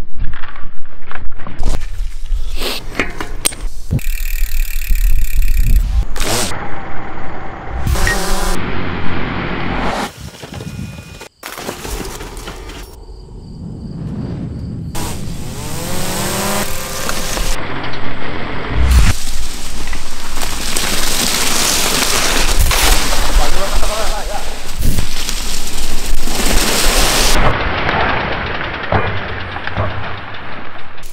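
Mountain bikes ridden down a steep forest trail, tyres rolling and sliding through deep dry leaves and dirt. The sound changes abruptly at several edits, with a quieter stretch near the middle.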